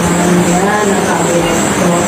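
A person's voice sounding continuously, with a pitch held for about a second near the start.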